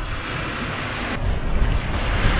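Steady rushing noise with a low rumble, its upper hiss easing a little past halfway.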